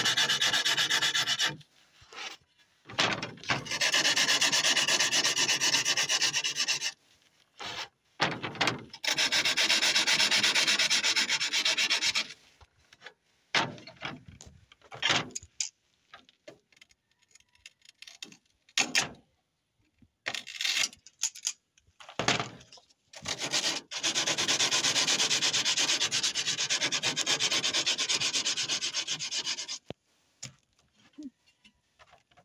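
The edge of a freshly cut pane of tinted window glass being rubbed smooth by hand with an abrasive. The steady scraping comes in runs of a few seconds each, with short pauses and a few light knocks between them.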